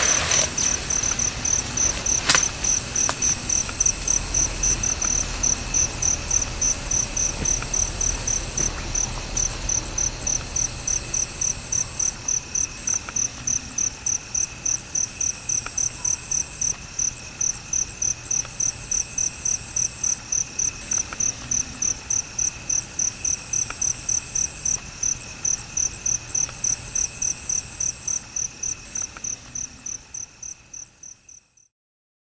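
Night insect chirping steadily in a high, even pulse about three times a second, with fainter continuous insect calls beneath it. A single sharp click comes about two seconds in.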